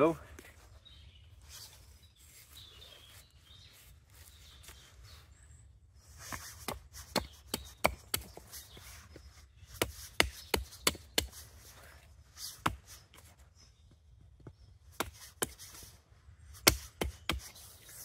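Small hatchet blade chopping into the end of a wooden stick. After a quiet few seconds comes a run of many sharp, irregular chops, some in quick groups.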